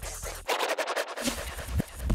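DJ mix of electronic music with record-scratch cuts: the music drops out at the start, then comes back choppy and stop-start from about half a second in.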